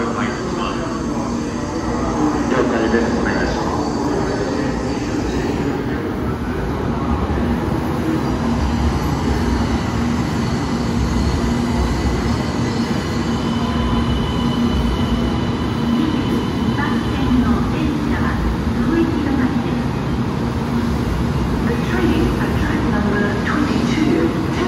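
A 700 series Rail Star Shinkansen pulling into the platform and slowing, with a steady rumble of wheels and running gear and a faint high squeal about halfway through.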